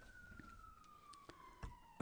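Near silence, with a faint thin tone slowly falling in pitch throughout and a soft thump near the end.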